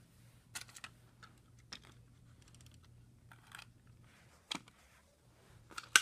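Scattered light clicks and rustles of toy cars being handled and moved over a paper track, with a sharper, louder knock near the end. A faint steady hum lies underneath.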